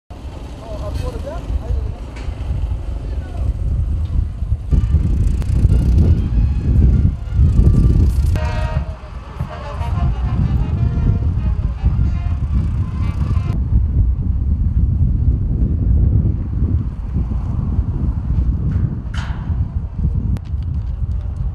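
Outdoor street ambience: a steady low rumble of traffic and wind on the microphone, with voices now and then.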